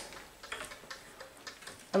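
Quiet room with a few faint, irregularly spaced clicks.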